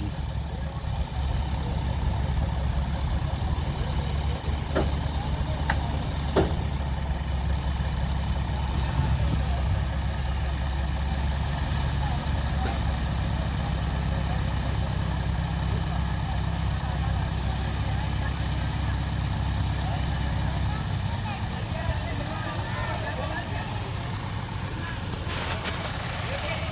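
Heavy diesel engine of the hydra crane machinery running steadily with a low drone, which eases off about 21 seconds in.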